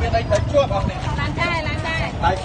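People talking, their voices overlapping, over a steady low rumble.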